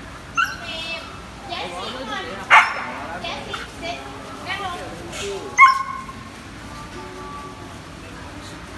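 A pack of dogs, mostly Siberian huskies, barking, yipping and making gliding, howl-like cries that rise and fall. The loudest barks come about two and a half and five and a half seconds in, and the second trails into a held whine lasting over a second.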